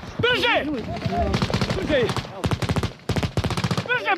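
Bursts of automatic gunfire, many rapid shots a second for about two seconds, with a man's voice calling out just before the shooting starts.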